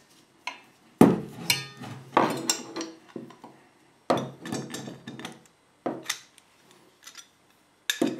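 Metal clanks and knocks as steel water pump pliers clamped on a brass padlock are handled and set down on a wooden workbench. The hits are irregular and briefly ringing, the loudest about a second in, and they thin out after about five seconds.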